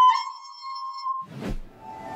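A plastic soprano recorder holding one high, clear note that stops about a second in. A sharp click follows as the recording cuts to another one.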